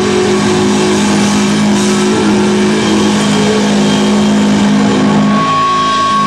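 Loud live metal band's distorted electric guitar ringing out on one held note through the amplifier, with the drums stopped. A higher steady feedback tone rises in near the end.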